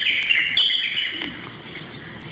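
Birds chirping, a run of loud high-pitched chirps in the first second or so, then quieter.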